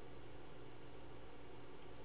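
Faint steady background hiss with a low, even hum: the recording's room tone, with no distinct event.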